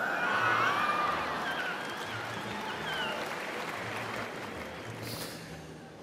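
Audience applause with some laughter, loudest in the first second and fading gradually.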